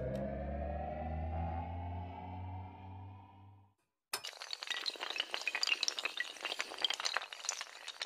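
Sound effects for an animated logo outro. A sustained electronic tone, its pitch rising slightly, fades and stops a little before halfway. After a brief silence comes a rapid, continuous clatter of many small glassy clinks and shattering pieces as the animated tiles fall.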